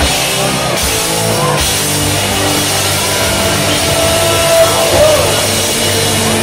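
Live southern rock band playing loudly, with electric guitars, keyboard, bass and drum kit. A long note is held above the band for a couple of seconds in the middle.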